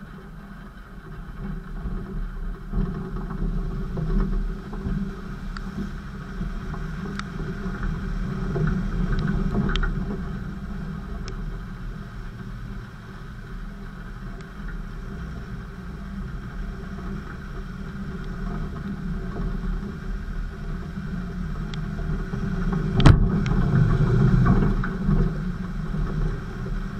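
Off-road Land Rover driving over muddy, stony ground, its engine running under changing load and swelling louder twice, with scattered small clicks. A single sharp knock, the loudest moment, comes about three seconds before the end.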